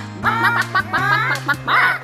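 Children's song playing: a singer over a light instrumental backing with steady bass notes.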